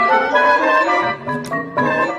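Audio pitch-shifted into several copies at once, giving a distorted, organ-like chord. The notes change every fraction of a second.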